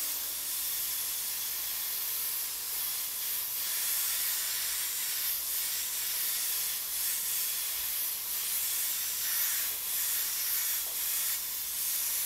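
Double-action gravity-feed airbrush spraying water-based paint: a steady hiss of air and paint from the nozzle, with slight swells and dips as the trigger is worked while shading.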